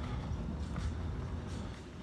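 Low, steady rumble of street background noise, with a few faint light ticks.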